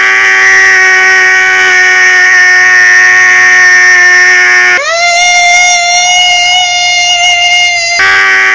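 A loud, drawn-out scream held at one unnaturally steady pitch, jumping to a higher held pitch about five seconds in.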